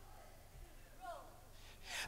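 A quiet pause: faint room tone with a faint voice about a second in, then a sharp breath drawn in just before speech resumes.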